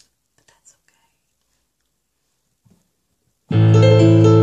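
Near silence, then about three and a half seconds in a digital keyboard suddenly sounds a full, sustained piano chord with a deep bass note.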